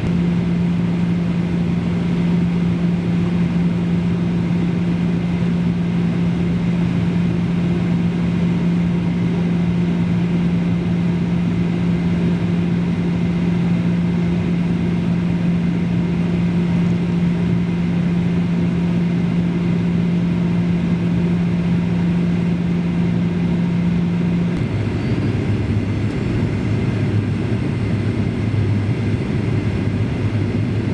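Steady cabin noise of a Boeing 737-800 airliner on its approach: engine and airflow noise with a strong low hum that drops to a lower pitch about three-quarters of the way through.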